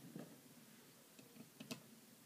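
Near silence with a few faint, sharp clicks, the clearest about three-quarters of the way through: a hand handling the plastic housing of a digital rain gauge.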